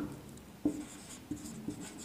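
Marker pen writing on a whiteboard: faint scratchy strokes with a few light taps, the most distinct about half a second in.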